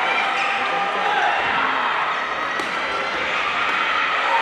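Badminton doubles rally: rackets striking the shuttlecock a few times, with sports shoes squeaking on the wooden court floor, over the chatter of a busy hall.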